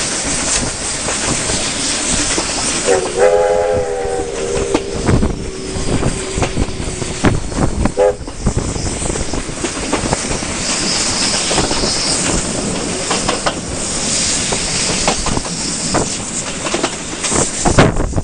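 Steam locomotive whistle: one long blast starting about three seconds in and held for about four seconds, its upper tones fading before the lowest, then a short toot about eight seconds in. Underneath, the train's steady running noise with the clicks of carriage wheels over rail joints, and wind at the open window.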